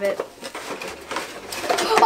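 Light clicks and rustling of cardboard doll boxes and their plastic packaging being handled and opened, with scissors snipping at the packaging.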